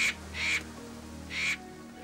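A cartoon crow cawing three times in quick succession, harsh short calls over background music.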